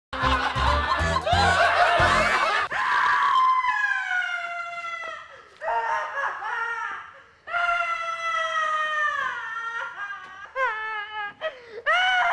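A brief music sting with a heavy beat, then a woman screaming: several long, high shrieks that each fall in pitch, followed by shorter cries near the end.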